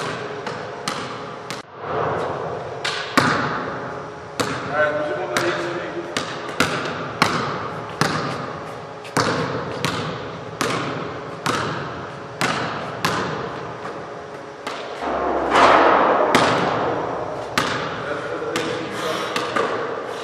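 Basketball being dribbled on a hardwood gym floor, a bounce about every half to two-thirds of a second, each echoing in the large hall, with sneakers squeaking on the floor between bounces.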